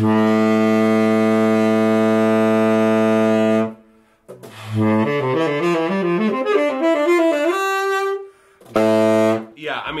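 Tenor saxophone played on a Yanagisawa metal mouthpiece with a wide tip opening (size 8). It holds one long steady low note for about three and a half seconds. After a short break it plays a climbing run of notes up to a higher held note, then briefly sounds the low note again.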